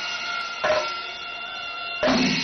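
Kerala pandi melam temple percussion: chenda drums and elathalam brass cymbals play a slow stroke pattern over a sustained ringing, siren-like tone, with one heavy accented stroke about two-thirds of a second in.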